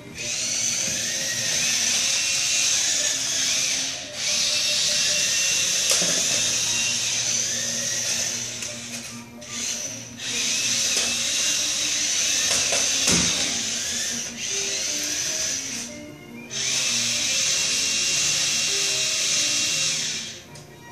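Small electric motors of remote-control toy bumper cars whirring in long runs, with short pauses about 4, 9 and 16 seconds in.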